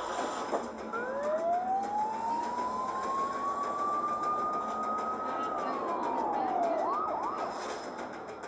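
Police car siren winding slowly up in pitch for about four seconds, then dropping, followed by three quick whoops near the end, over a steady background hiss.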